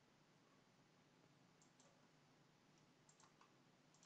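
Near silence: room tone, with a few faint, short clicks in the second half.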